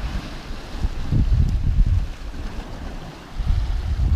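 Wind buffeting the microphone in uneven gusts, over the wash of sea waves breaking against rocky shore.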